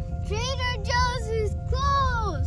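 A child singing wordless notes that slide up and then down in pitch, in about three short phrases, over steady held tones and the low rumble of a car.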